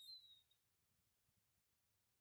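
Near silence, with a faint, brief, high chirp that falls slightly in pitch in the first half second.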